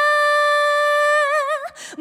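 A woman singing unaccompanied into a microphone, holding one long high note that turns into a wide vibrato about a second and a half in and then breaks off for a breath near the end.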